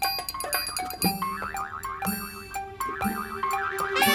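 Springy cartoon boing sound effects, about one a second, each a wobbling pitch that warbles up and down, for the hidden bouncing rocket rocks. They play over a light children's music score.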